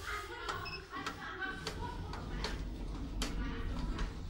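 Elevator car floor buttons being pressed: about five sharp clicks a little under a second apart, with one short beep near the start, over the car's low steady hum.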